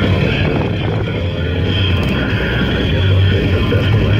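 Jeep engine running steadily during a winch recovery, as a stuck flat-fender Jeep is pulled out of deep snow.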